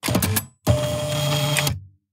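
Edited-in transition sound effect: a short clatter of clicks, then about a second of steady mechanical buzzing that stops suddenly.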